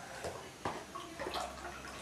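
Milk pouring faintly from a small carton into a mug, with a couple of light knocks in the first second.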